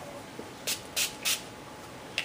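Dylusions ink spray bottle's pump nozzle sprayed three times in quick succession, three short hisses about a third of a second apart.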